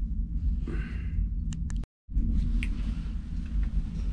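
Low, steady rumble of a small wood-chip-fired stove drawing hard as the fire takes, with a few faint sharp crackles. The sound cuts out completely for a moment about two seconds in.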